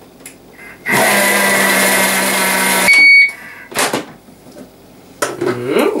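Thermomix TM31 motor running at speed 5 for about two seconds, blending quark, sugar and orange zest, then stopping with a short electronic beep. A brief knock follows.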